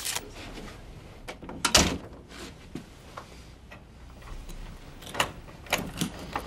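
Handling noises from a wooden desk drawer and an office door: objects knocking in the drawer, with the loudest knock about two seconds in, then a few sharp metal clicks near the end as the door's lock is worked.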